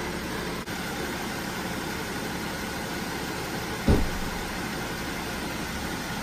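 Steady running sound of a diesel BMW X5 engine idling, with one short low thump about four seconds in.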